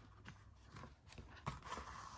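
Faint rustling of paper and a few light taps as thread is pulled by hand through holes in the folded pages while a book spine is stitched.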